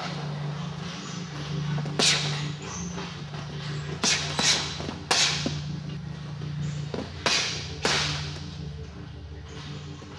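Kicks and punches landing on a hanging heavy bag: about six sharp slaps at uneven intervals, two of them in quick pairs, over a steady low hum.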